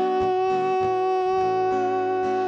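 A man's voice holding one long sung note over strummed acoustic guitar chords.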